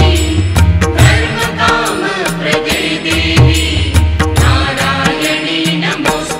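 Hindu devotional mantra chanted by a woman's voice over music with a deep repeating bass line and steady percussion.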